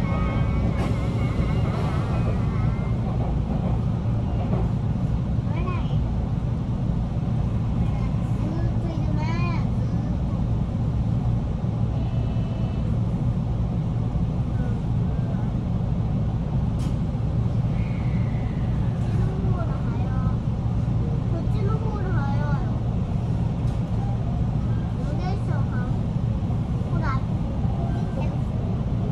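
Steady low rumble of an electric commuter train running, heard from inside the passenger car, with faint voices now and then.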